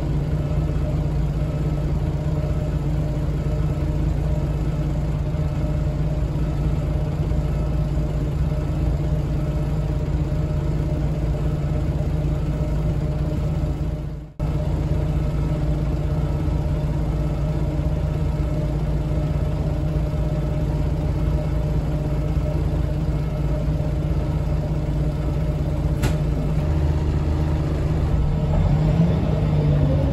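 Scania L94UB city bus's DC9 five-cylinder diesel idling steadily, heard from inside the passenger cabin while the bus stands still. Near the end the engine note rises as the bus pulls away. The sound drops out briefly about halfway through.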